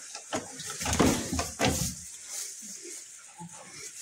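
Goats pulling hay from a feeder and chewing it: irregular rustling and crackling of dry hay, with a few short crunches.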